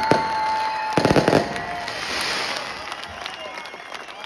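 Fireworks exploding: a bang right at the start, then a rapid run of cracks about a second in, followed by a crackling hiss that fades away.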